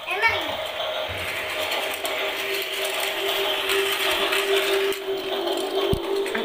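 Battery-powered plastic ball-track toy running, its motorized lift clicking and ratcheting, with a steady hum joining in about halfway.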